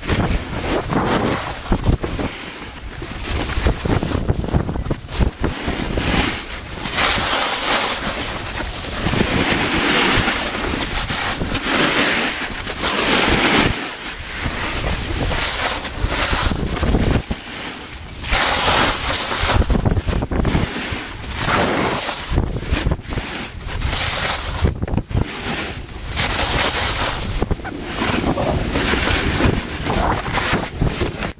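Snowboard sliding and scraping over packed snow with wind rushing across the camera microphone, a loud rushing noise that swells and drops every few seconds.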